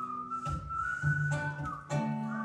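A whistled melody line, one long note that slides up at the start and is then held, over soft plucked guitar notes.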